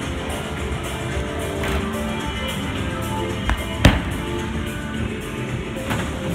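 Background music playing, with one heavy thud about four seconds in: a bowling ball hitting the lane as it is thrown.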